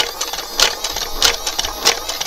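A battery-powered automatic Tommy 20 toy dart blaster fired empty: its motor whirs steadily while the firing mechanism clacks about once every 0.6 s, a slow rate of fire.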